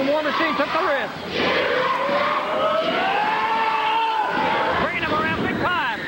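Ringside wrestling crowd shouting and jeering, several voices overlapping. In the middle one long drawn-out call rises in pitch and holds for about two seconds.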